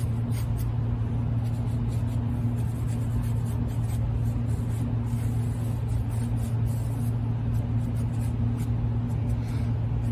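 A steady low hum runs throughout. Over it come faint, soft scratches of a round paintbrush dabbing and spreading acrylic paint on a stretched canvas.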